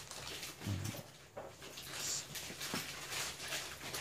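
A pen drawn along a ruler across paper, scratching as a line is ruled.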